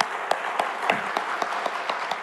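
A congregation applauding, many hands clapping irregularly.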